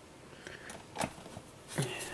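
Quiet room with the box fan switched off: faint rustling and one sharp click about halfway through, then a voice starting near the end.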